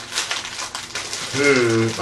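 Crinkling and crackling of a sealed foil blind bag being squeezed and opened by hand, in a quick run of small crackles; a voice comes in near the end.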